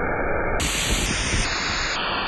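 Waterfall pouring and splashing down a rock face close by, a steady rushing noise of water striking stone.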